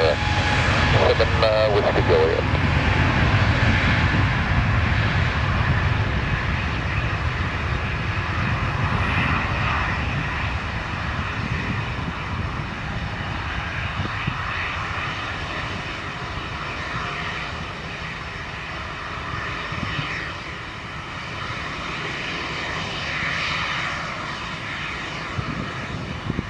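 Airbus A320neo's CFM LEAP-1A turbofan engines at takeoff thrust during the takeoff roll, loudest at first and slowly fading as the jet accelerates away down the runway.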